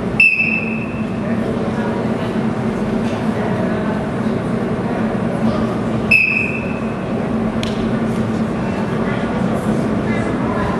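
Two short, shrill blasts on a wrestling referee's whistle, one at the very start and one about six seconds later. The first stops the ground exchange and the second restarts the bout from standing, over steady crowd chatter.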